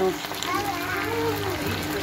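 Pork loin fillets and sliced garlic sizzling in oil in a pot, with a person's voice drawn out over it.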